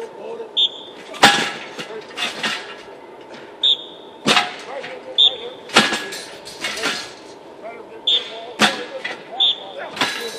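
Football players driving one after another into a padded one-man blocking sled: four sharp pad-on-sled hits a second and a half to three seconds apart, each just after a short high squeak.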